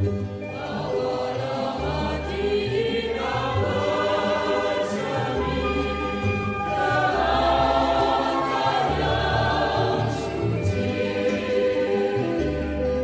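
Background choir music: voices singing sustained chords over a low bass line that changes every second or two.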